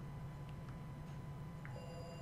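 Low, steady electrical hum, with a faint high electronic tone of several pitches coming in near the end.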